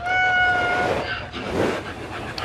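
A dog whining: one short, high whine held at a steady pitch for just under a second, followed by faint rustling.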